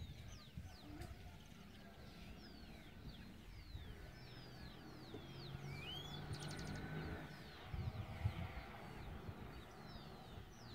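Small birds calling all around, many quick downward-sliding chirps overlapping, with a brief high rattle a little past the middle.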